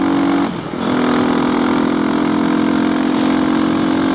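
Yamaha WR250X's single-cylinder four-stroke engine running under way through a full FMF exhaust, loud. It eases off briefly about half a second in, then pulls steadily again.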